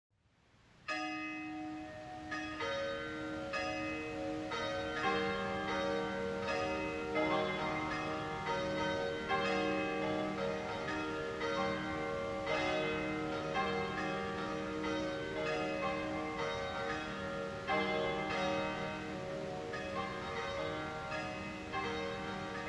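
Church bells ringing: repeated strikes, one or two a second, starting about a second in, each ringing on and overlapping the next.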